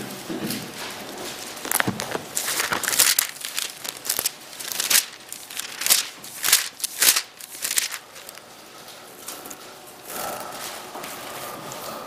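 Irregular rustling and crackling handling noises, a run of sharp brushes and clicks that comes thickest in the middle stretch, then quieter.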